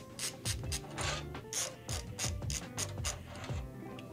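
Phillips screwdriver backing out the graphics card's bracket screws on the back of a PC case: a run of light clicks, about four a second, that stops near the end.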